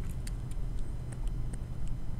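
Steady low rumble of background room noise, with several faint light ticks from a stylus tapping and drawing on a tablet screen as a summation sign is written.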